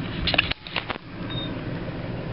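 A Range Rover P38's V8 engine running steadily, heard from some distance as a low rumble. A quick cluster of knocks and clicks comes about a quarter of a second in and lasts to about one second.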